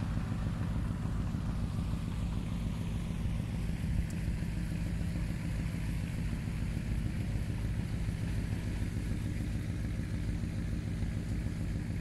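A vehicle engine idling steadily, a low, even running sound with no change in pitch.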